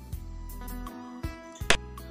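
Background music with plucked guitar, steady and moderately loud. Near the end a single sharp click cuts through, the sound effect of a xiangqi piece being moved on the on-screen board.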